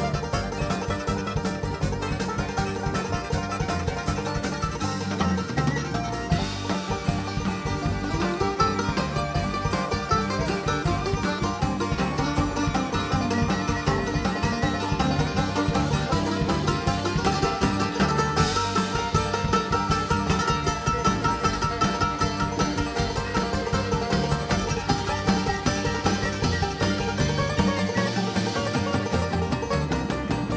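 Bluegrass band playing a long instrumental break: rapid three-finger banjo picking, with a mandolin also picking over the band and drums.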